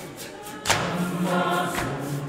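Zionist church choir singing together in held, sustained notes, with two heavy thumps a little over a second apart, the first the loudest.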